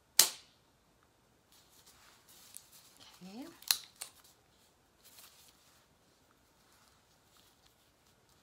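A spring-loaded hyaluron pen firing against the skin of the jaw with one loud, sharp snap just after the start. About three and a half seconds later there is a second, quieter sharp click among light handling noise, with a brief rising hum of voice just before it.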